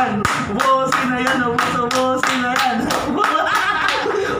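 Several people clapping their hands in a steady rhythm, about four claps a second, with a voice singing along.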